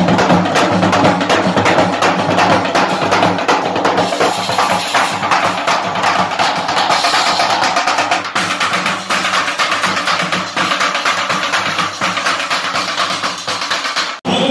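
A troupe of Maharashtrian dhol drums beaten with sticks, playing a dense, fast, unbroken rhythm.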